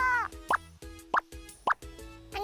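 Three short cartoon "bloop" pop sound effects, each rising quickly in pitch, about half a second apart, over soft background music.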